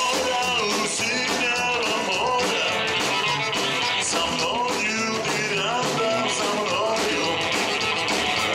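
Rock-and-roll band playing live: a male singer over electric guitar, upright double bass, drums and accordion, at a steady level.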